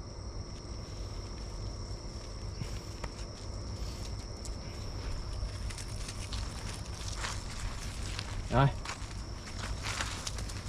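Footsteps on a dirt path scattered with dry leaves, over a steady high chirring of night insects.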